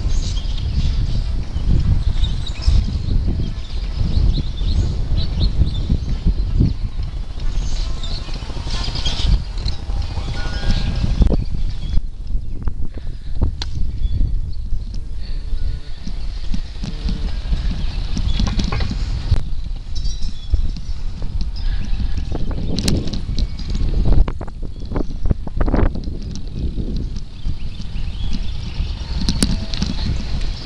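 Wind rumbling and buffeting on a handheld camera's microphone during a bicycle ride, with scattered clattering knocks from the bike and the camera being handled.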